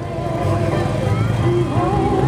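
A motor vehicle engine running with a steady low rumble, with people talking in the background.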